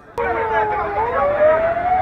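Emergency-vehicle siren: a single wailing tone that cuts in suddenly and rises slowly in pitch from about a second in, over a crowd talking.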